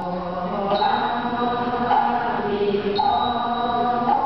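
Group of Buddhist monks chanting together in unison, holding long notes that move to a new pitch every second or so. A thin high ringing tone comes in sharply about a second in and again near the end.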